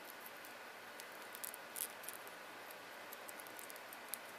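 Scattered faint clicks and taps of fingers handling a small plastic action figure while pulling a bit of plastic off it, a couple of them louder a little under two seconds in, over a steady background hiss.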